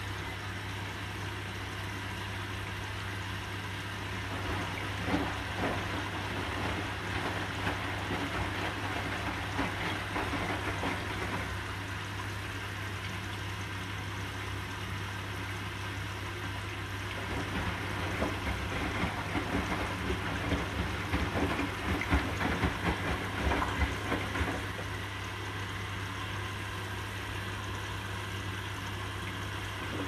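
Hotpoint NSWR843C washing machine in its final rinse: the drum tumbles the wet load, water sloshing and splashing, over a steady low hum. The tumbling eases off in the middle and starts again more strongly in the second half.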